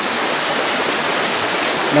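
Flowing river water rushing steadily, an even wash of sound.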